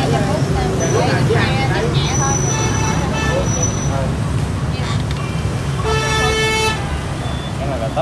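Busy street traffic: a steady low engine rumble, with a vehicle horn honking once for under a second about six seconds in.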